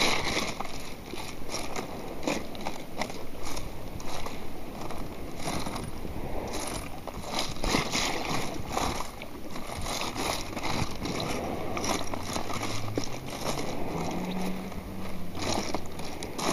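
Water sloshing and splashing around a floating sifter basket, with pebbles clicking and rattling on its plastic mesh as they are picked through by hand.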